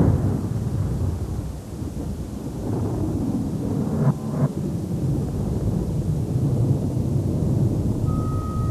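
A thunder-like sound effect: a deep, continuous rumble that starts abruptly, with two short sharp cracks about four seconds in.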